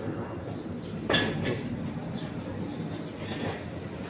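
Leaves and twigs of a red-tip shrub rustling and brushing against the phone as it is pushed into the foliage: a sharp brush about a second in and a softer rustle a little past three seconds, over steady low background noise.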